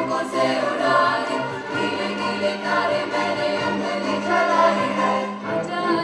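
Choir singing with a string orchestra of violins, cellos and double bass in a live performance, sustained chords with a low note held through the middle.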